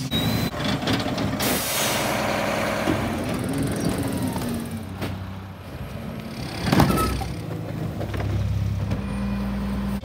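Rear-load garbage trucks working at the curb: diesel engines running and packer hydraulics. There is a long hiss about a second and a half in and a sharp, loud hiss near seven seconds in, the loudest moment.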